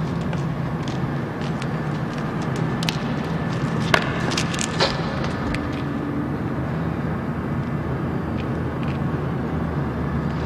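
A steady low hum, with a few sharp clicks or knocks about four and five seconds in.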